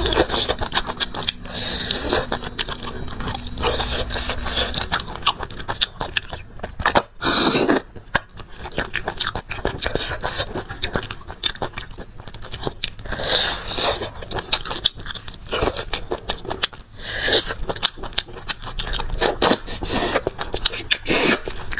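Eating sounds: sucking marrow out of cut beef bones and chewing, a dense run of many small clicks and smacks with a few longer sucking draws.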